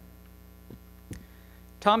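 Steady electrical mains hum in the sound system during a pause in a man's talk, with a couple of faint clicks; his speech resumes near the end.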